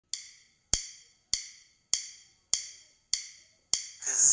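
Metronome count-in from a piano-learning app: seven short, sharp clicks, evenly spaced a little over half a second apart, the first softer than the rest. They count in the tempo before the song begins.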